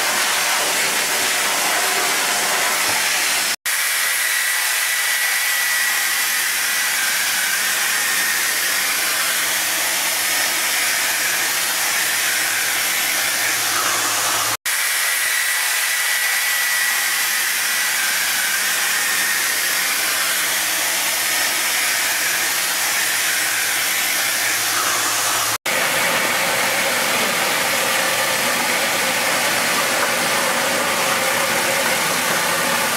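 Steady, loud rushing hiss of a high-pressure spray and vacuum tile-cleaning wand working over wet brick pavers, broken by three very short gaps.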